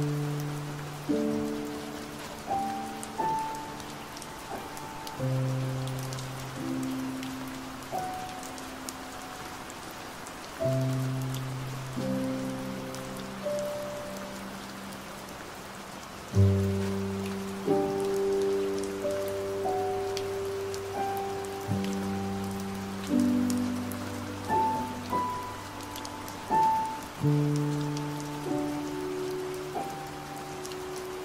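Slow, soft piano music over steady rain: single notes and low chords are struck every second or two, each fading away, while rain hisses and patters underneath throughout.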